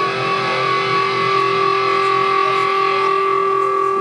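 Live alternative rock band playing an instrumental stretch: distorted electric guitars hold a steady sustained chord over the band.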